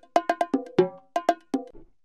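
Sliced bongo drum loop playing back from a drum sampler plugin: a quick, uneven run of sharp bongo hits, each with a short pitched ring.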